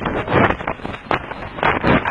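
Mountain bike clattering down a rough dirt trail at speed: irregular knocks and rattles from the bike over bumps, with tyre noise and wind on the microphone.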